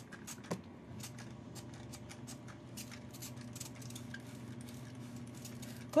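A cloth wiped with alcohol over a clear glass dessert plate to degrease it: a quick, irregular series of faint rubbing strokes on the glass.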